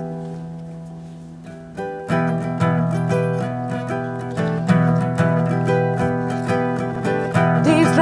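Acoustic guitar: a chord struck and left ringing, fading away over the first two seconds, then steady rhythmic strumming. A woman's singing voice comes in right at the end.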